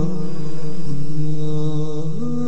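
Background vocal chant in long held notes, the voice stepping to a new pitch about a second in.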